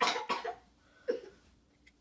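A person coughing: a sharp double cough at the start, then a shorter cough about a second in.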